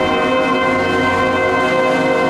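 School symphonic band of woodwinds and brass holding one long sustained chord, steady in pitch and loudness.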